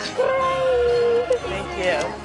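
A person's long, high, held cry of excitement: one steady, slightly falling note lasting about a second, followed by brief chatter.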